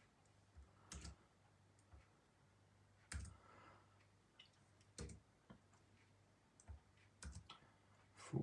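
Near silence broken by a scattered handful of faint computer clicks, made while scrolling through a document. The loudest comes about three seconds in.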